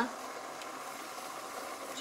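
Sugar water boiling steadily in a stainless steel pot as semolina is poured in slowly and stirred with a wooden spoon.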